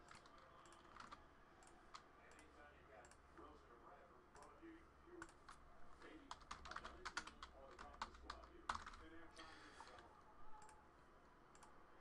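Faint typing and clicking on a computer keyboard, with a quick run of keystrokes in the middle.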